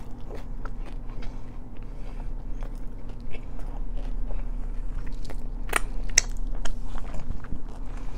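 Close-miked chewing of a mouthful of Korean corn dog, with many small wet mouth clicks and crunches of the fried batter coating. Two louder crunches come about six seconds in.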